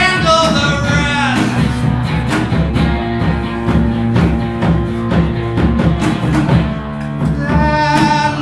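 Live rock song with electric guitar and a steady beat, mostly instrumental; a man's singing voice trails off about a second in and comes back in near the end.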